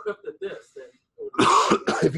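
A person coughing once, a short noisy burst about one and a half seconds in.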